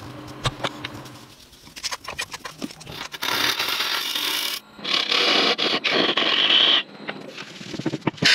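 A turning gouge cutting a spinning wood blank on a wood lathe: two long, hissing, scraping cuts in the second half, after a few scattered knocks.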